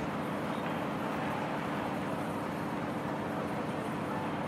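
Steady railway-platform background ambience: an even noise with a faint low hum underneath and no distinct events.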